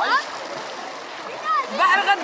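Sea water splashing around people playing waist-deep in the surf, with a short rising shout at the start and voices coming in near the end.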